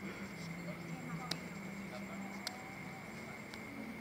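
Quiet gym ambience: faint distant voices over a steady low hum, with three sharp light taps about a second apart.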